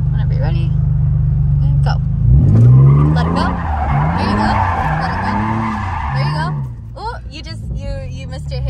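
Nissan 350Z's V6 engine heard from inside the cabin, running steadily for about two seconds, then revving up and down several times while the rear tyres squeal and skid through a donut; the squeal dies away near the end.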